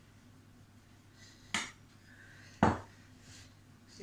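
Two sharp knocks about a second apart, a wooden rolling pin striking the worktop while chilled shortcrust dough is rolled out.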